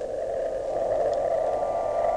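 A sustained electronic drone from the film's score: one steady low-middle pitch with a row of overtones, swelling in the first half second and then holding level.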